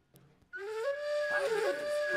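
Recorded music starting about half a second in: the opening of an Ethiopian ethnotronica track, a flute-like wind melody of long held notes stepping upward.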